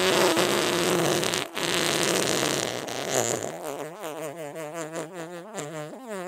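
Fart sounds: a long, rough, noisy fart with a brief break about a second and a half in, then from about three and a half seconds a quieter, lower fart with a fast wobbling pitch that carries on past the end.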